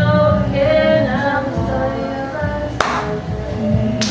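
A karaoke song playing loud, with a sung melody over the backing music. Just under three seconds in there is one sharp hit, like a clap.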